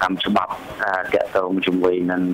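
Speech only: a person talking in Khmer, continuously.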